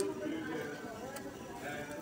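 Indistinct talking in the background with faint music, and a single sharp click about a second in.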